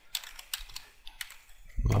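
Typing on a computer keyboard: a handful of separate keystrokes at an uneven pace.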